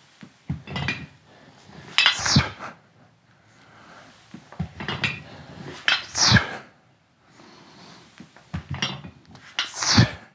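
Dive weights on a weight belt clinking together during deadlift repetitions, with a sharp forceful exhale, hard-style breathing, as the weight comes up, three times about four seconds apart.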